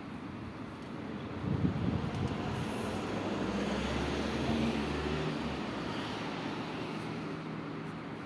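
Steady outdoor background noise with a low engine rumble that swells about three seconds in and eases off after five seconds, over an even hiss.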